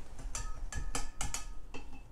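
A quick run of about six light clicks and taps, a couple with a brief faint ring, from a paintbrush being put down and another one picked up.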